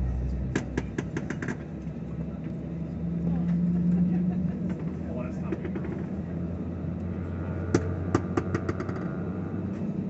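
Airliner cabin noise: a steady low engine drone heard from a window seat, swelling a little a few seconds in. Two quick runs of sharp clicks or rattles cut through it, about half a second in and again near eight seconds.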